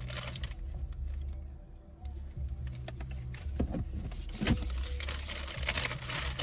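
Handling noise: a run of light clicks and rustles as a plastic bag and a pump bottle are handled, with a quieter pause about a second in, over a steady low hum.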